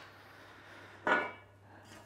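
A short clatter of kitchen utensils being handled on the worktop about a second in, against faint room tone.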